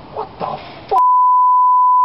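Two brief sounds, then a click and a single long electronic beep about a second in: one pure, steady tone held for about a second before it cuts off sharply.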